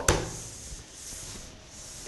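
A brief knock, then soft, steady rustling or rubbing noise.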